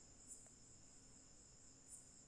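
Near silence: a pause in the narration, with only a faint, steady high-pitched tone held under the room tone.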